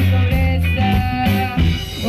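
Band music played live: guitar and drums over a moving bass line.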